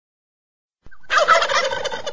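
A turkey gobbling: one rapid, fluttering gobble that starts abruptly about halfway through.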